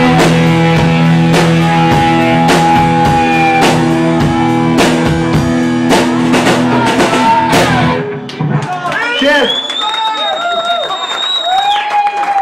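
Live rock band of electric guitars, bass and drum kit playing the closing bars of a song, with drum hits on the beat, then stopping about eight seconds in. After that come shouts and a long high whistle from the audience.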